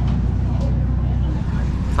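A steady low rumble runs throughout, with faint voices of people talking in the background.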